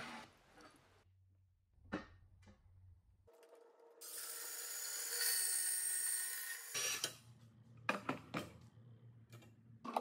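Cordless portable band saw running and cutting through 14-gauge 2 by 3 inch steel tube for about three seconds, from a few seconds in: a steady motor whine under the hiss of the blade. It cuts off, and a few short knocks follow.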